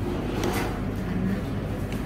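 Busy dining-room background: a steady low hum with faint distant voices, and one short light click about half a second in.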